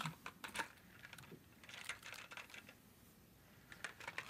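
Faint, irregular clicks and clacks of hands handling a cassette tape recorder and pressing its buttons.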